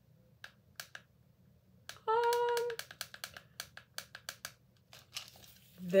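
Scattered small, sharp clicks, a dozen or more at uneven spacing: buttons on a colour-changing LED light's remote being pressed as the light colour is switched. About two seconds in, a voice holds a short, steady note.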